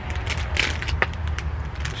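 Clear plastic wrapper of an ice cream cone crinkling as it is handled and started open, a run of short irregular crackles.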